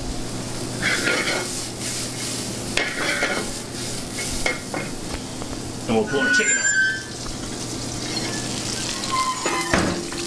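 Food sizzling in aluminium sauté pans over the lit burners of a gas restaurant range, with a steady low hum underneath. Metal pans and utensils clank now and then, with the loudest clank near the end.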